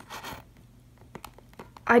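A few faint, sharp clicks and a light rustle from hard plastic toy figures being handled and shifted on a tabletop.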